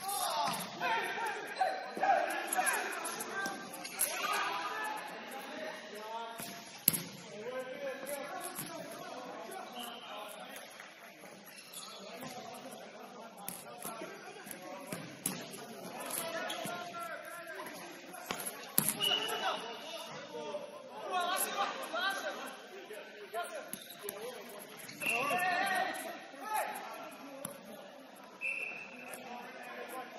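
Players calling out and chattering in a large indoor hall, punctuated by sharp knocks of a futsal ball being kicked and struck on the court, the loudest about seven seconds in.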